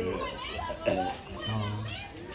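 People talking, with music in the background.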